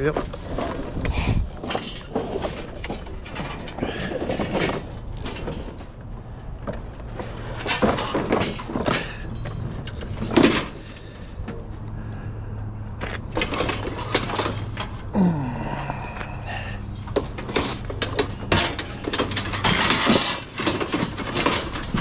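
Scattered knocks and metal clatter as a push lawn mower is lifted onto a trailer piled with scrap and shifted into place, over a steady low hum.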